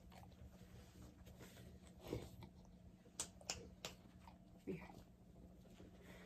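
Near silence broken by a few faint, sharp crunching clicks, most of them in a cluster a little past the middle: a dog chewing a treat close by.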